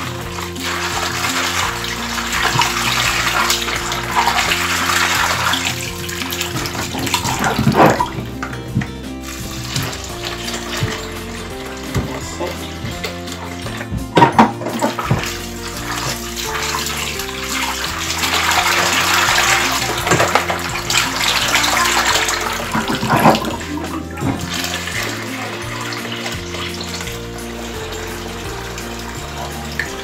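Water running and splashing as soaked black-eyed beans are rinsed in a plastic colander and bowl in a stainless steel sink, washing away the loosened bean skins. The water swells and falls, with a few sharp knocks.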